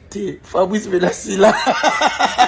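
A man's voice, speaking and then laughing in a run of quick, evenly spaced chuckles from about one and a half seconds in.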